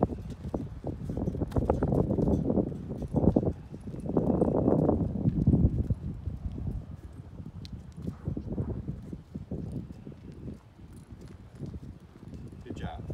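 A man and a Doberman walking on a concrete driveway: his footsteps and the dog's nails clicking on the concrete, a steady scatter of light ticks. Low gusts of wind rumble on the microphone in the first half.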